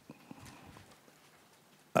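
Quiet room tone in a pause between words, with a few faint clicks in the first half second.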